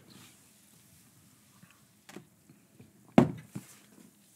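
People sipping cola from glasses, mostly quiet, with a faint click about two seconds in and a short, sharp sound a little after three seconds, followed by a couple of smaller ones.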